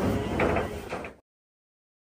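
Scraping, rustling noise of cattle feeding at a hay trough with a metal rail. It cuts off abruptly a little over a second in, and silence follows.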